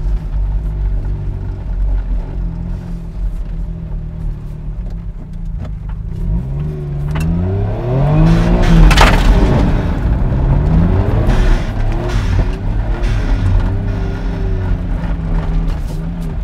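Autozam AZ-1's small turbocharged three-cylinder engine running as the car is driven and turned on dirt. From about six seconds in, the revs rise and fall repeatedly, peaking near nine seconds with a brief burst of hiss.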